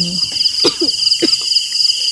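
Crickets chirring in a steady night chorus: a continuous, fast-pulsing high trill at two pitches.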